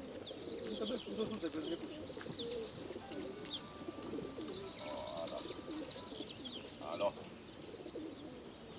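A large flock of racing pigeons cooing together in their transport crates, a dense continuous murmur of overlapping coos, with high bird chirps scattered over it.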